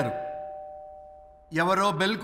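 Two-tone ding-dong doorbell chime, a higher note then a lower one, ringing out and fading away over about a second and a half.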